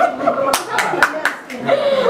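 Scattered hand claps from a few people, irregular and uneven, over people talking.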